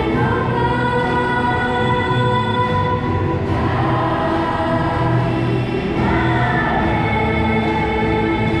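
A choir singing a slow hymn in long held chords that change every few seconds.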